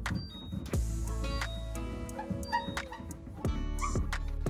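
Background music with a steady beat and plucked notes.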